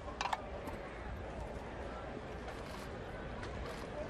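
Steady ballpark crowd ambience: an even murmur of a large outdoor crowd, with a short sharp sound about a quarter second in.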